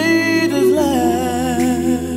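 A cappella vocal group humming a sustained chord in close harmony, without words, over a low held bass voice that steps down to a lower note partway through.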